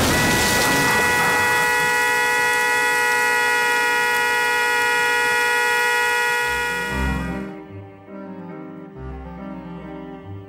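A car horn blaring continuously and unwavering after a crash into a ditch, fading out about seven seconds in. Low, slow string music with cello and double bass follows.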